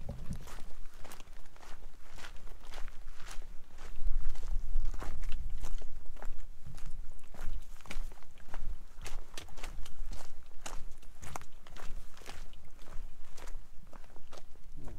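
A hiker's footsteps crunching on the ground at a walking pace of about two steps a second, with a low rumble that is loudest about four seconds in.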